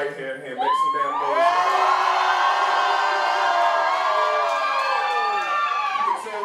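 High-pitched screaming voices held for about five seconds, several pitches at once, sliding down in pitch near the end.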